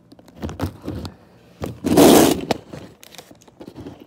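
Handling noise from a phone held in the hand while it is moved about: short scrapes and rustles, with one loud scrape lasting about half a second around the middle.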